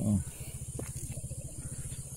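A small engine idling steadily with an even, fast low pulse, under a constant high-pitched hiss; a short exclamation ("oh") at the very start.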